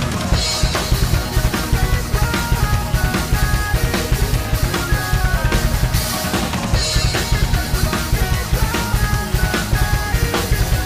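Acoustic drum kit played hard along to a heavy metal backing track: a fast bass drum beat under snare hits, with cymbal crashes near the start and again about seven seconds in. The recorded song's pitched melody runs underneath.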